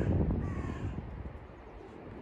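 A crow cawing twice, short slightly falling calls, the second about half a second in, over a low rumble.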